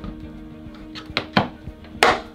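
Two sharp clicks about a fifth of a second apart, a little over a second in, and a louder one at the very end: the lid latches of a hard plastic case snapping shut.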